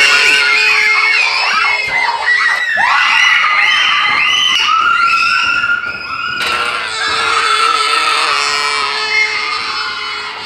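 Several children screaming at once in overlapping high-pitched shrieks, over a steady tone.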